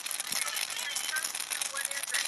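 Burning firework reveal display crackling in a fast, continuous run of sharp pops.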